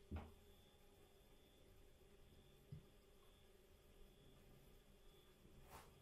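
Near silence: faint steady room hum, with a few soft eating sounds, a click just after the start, a low knock partway through and a faint crackle near the end, as a lamb chop is bitten and bread torn.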